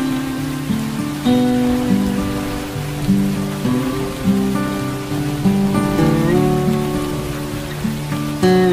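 Slow plucked acoustic guitar music, notes changing every half second or so with some sliding in pitch, over steady rain.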